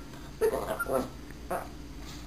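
A small puppy giving a couple of short, soft yips, one about half a second in and another a second and a half in. The yips answer a "speak" command for a treat.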